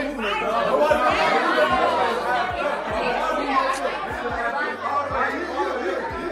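A group of people talking over one another: overlapping chatter with no single clear voice.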